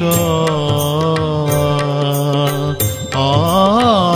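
Indian devotional bhajan music: a long held melody note over a steady drone, with light rhythmic percussion throughout. About three seconds in, the melody bends up and down into a new phrase.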